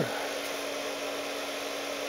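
Steady hum with one constant mid-low tone from a 12 V to 230 V power inverter running under load, drawing about 11 amps from the battery.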